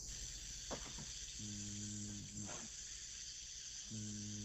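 A vocalist's diaphragm-pressure warm-up: a steady, faint hiss through the teeth, joined by a held hum for about a second midway and again near the end.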